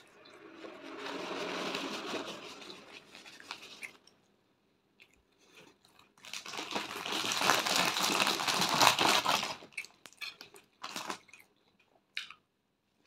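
Close-miked chewing of a mouthful of bread, with wet smacking and crackle in two long stretches, the second louder, then a few scattered mouth clicks near the end.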